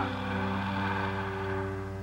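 Soft background score holding a sustained chord, with a light hiss underneath.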